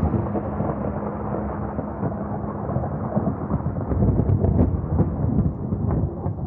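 A continuous low rumbling with many small crackles, growing louder about four seconds in.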